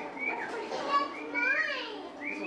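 Children's high-pitched voices, calling and chattering as they play.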